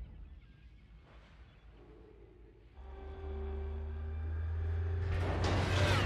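Film soundtrack: after a near-quiet stretch, a deep low drone with a few steady held tones swells in about three seconds in and slowly grows louder, with a rush of noise building near the end.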